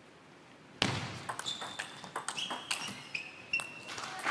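Table tennis rally: the plastic ball clicking sharply off the paddles and table in quick, uneven succession, starting with a loud click about a second in. Short high squeaks, typical of shoes on the court floor, come in among the clicks.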